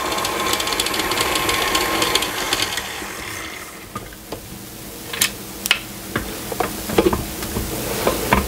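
KitchenAid tilt-head stand mixer running steadily, its flat beater creaming softened butter with white and brown sugar. The motor stops about three and a half seconds in, followed by a few clicks and knocks as the mixer is handled and its head tilted up.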